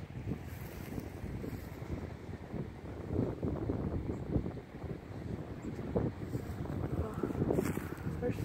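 Wind buffeting a phone's microphone: a gusty, uneven low rumble, with a few sharper knocks in the second half.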